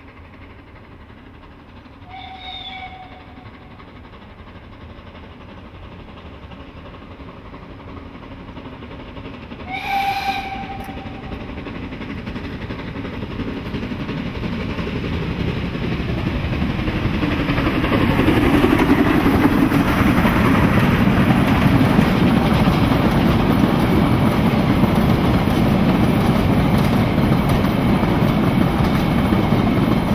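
Narrow-gauge steam locomotive whistle sounding twice: a short, weaker blast about two seconds in and a louder one about ten seconds in. The train then draws near and passes close by, the running noise of its wheels and coaches on the rails swelling to a loud, steady rumble and clatter.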